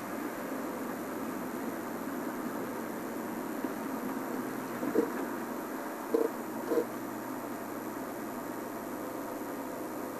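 A game-drive vehicle's engine running steadily as it creeps along behind the animals, under a constant hiss. A few short, faint blips come about halfway through.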